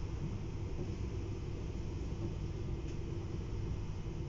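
Steady low rumble of a TER regional train on the move, heard from inside the passenger coach.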